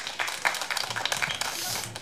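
Audience of children applauding, many hands clapping at once.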